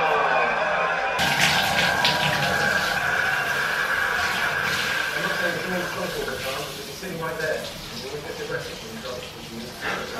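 Shower water running and spraying onto a head as bleach is rinsed out of the hair. It comes on about a second in and drops back somewhat in the second half.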